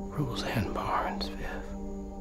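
A brief breathy, whispered voice with a falling pitch over a steady low musical drone.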